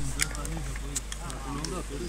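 Indistinct voices talking, with a few light clicks in the first second.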